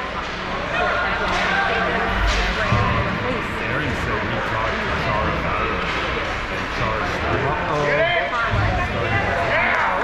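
Youth ice hockey game: voices calling out and chattering around the rink, with a few higher-pitched shouts near the end. Occasional short knocks and thuds of sticks and puck are heard through it.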